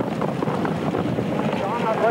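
Trackside noise of a harness race: a dense, rushing rumble of pacers and sulkies going past, with a race caller's voice coming in near the end.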